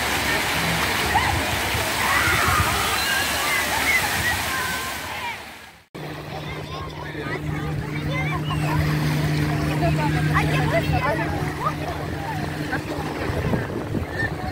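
Fountain jets splashing steadily, with people's voices mixed in. After a sudden cut about six seconds in, the quieter chatter of a crowd on a beach, with a steady low hum under it.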